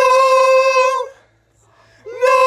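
A singer's voice holding one steady high note, sliding up into it at the start and stopping about a second in.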